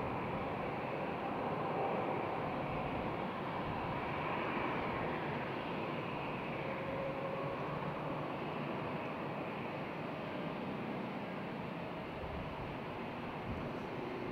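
Distant airliner jet engines running at low taxi power: a steady rumble and hiss with a faint whine, easing slightly toward the end.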